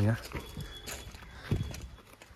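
A few soft footsteps on dry soil and grass, spaced about half a second apart.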